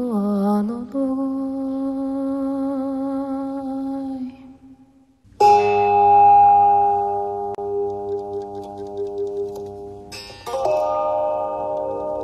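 Chanted mantra music: a sung note held and fading out about four seconds in, then a bell-like chime struck twice, about five seconds apart, each strike ringing on with a long decay.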